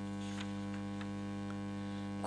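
Steady electrical mains hum, with a few faint clicks.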